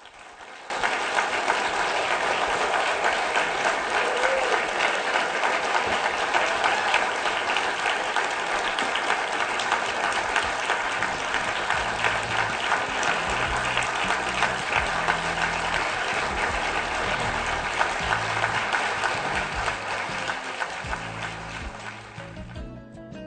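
An auditorium audience applauding at the close of a speech. The clapping starts about a second in, stays dense and loud, and begins to fade near the end, with music and low bass notes coming in underneath about halfway through.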